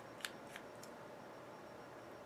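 Three short, faint clicks in the first second as a small plastic battery voltage tester is handled, over quiet room tone.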